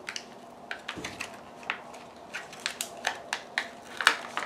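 Fingernails picking at a sticker sheet and a paper sticker being peeled from its glossy backing: a string of small, irregular clicks and crackles.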